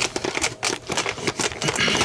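Handling noise: a rapid, irregular run of clicks and rattles.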